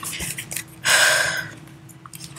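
A woman's single sharp, breathy intake of breath, a gasp about a second in, lasting about half a second.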